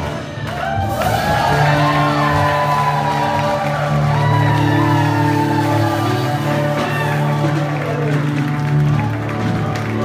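Live band holding one sustained chord while the crowd in a large hall shouts, whoops and cheers. The held chord sets in about a second in and fades just before the end.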